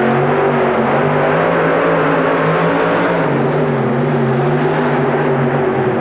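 Two-engine modified pulling tractor at full throttle under load, its pair of supercharged engines running together as it drags the weight-transfer sled. The engine note is loud and steady, wavering slightly up and down in pitch.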